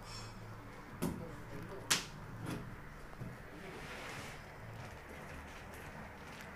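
A few sharp clicks and knocks of clear plastic cups being handled on a wooden table. Two loud ones come about one and two seconds in, then a couple of fainter ones.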